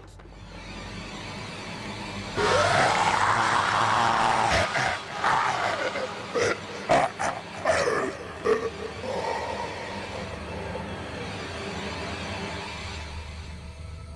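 A woman's strangled, guttural roar starting a couple of seconds in, rising and falling in pitch, then breaking into short choking gasps and cries before it dies away: a horror-film possessed woman being choked with a rope.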